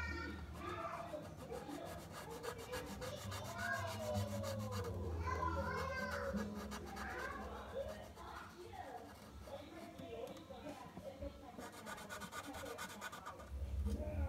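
Indistinct voices talking in the background throughout, over a low hum.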